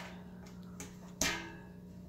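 A single sharp click with a short ringing tail about a second in, as a louvered two-tube fluorescent light fixture is powered up and its tubes come on, over a steady low electrical hum.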